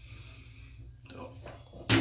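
A sudden plastic clunk near the end as a media basket is lifted out of the stacked baskets of a Fluval FX6 canister filter. Before it there is only a faint low hum.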